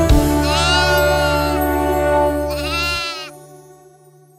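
Two long, quavering sheep bleats, 'méeee', the first longer than the second, over the held closing chord of a children's song. The music stops about three seconds in and the sound fades away.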